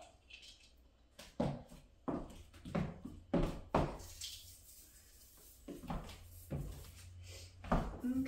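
Plastic Christmas ornaments and a clear plastic storage bin being handled: about eight sharp, irregular clicks and knocks over a low steady hum.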